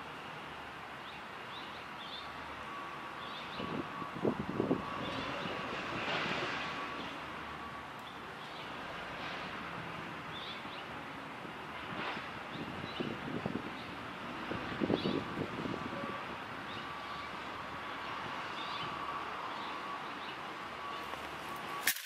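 Outdoor ambience: a steady hiss of wind and distant traffic, with small birds chirping now and then. A few louder gusts or rumbles rise over it.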